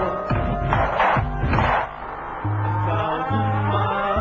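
Live concert music played over a PA. A busy beat runs through the first half and drops away briefly about two seconds in; after that, deep bass notes are held for most of a second each, with short gaps between them.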